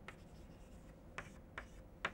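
Chalk writing on a blackboard: a few faint, short taps and scrapes as a word is written.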